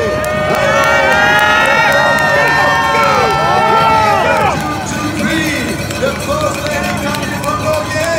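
Spectators cheering and shouting, many voices rising and falling over one another for about four seconds, then easing off.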